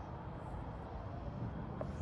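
Low steady background rumble with no distinct events, and a faint click near the end.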